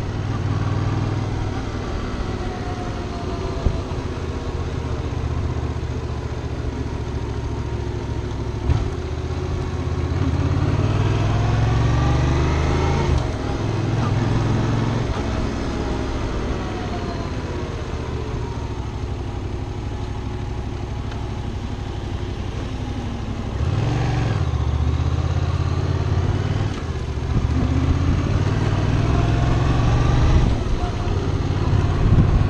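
Yamaha FZ-07's parallel-twin engine running under way, its pitch climbing and falling several times as the bike accelerates and eases off, over road noise.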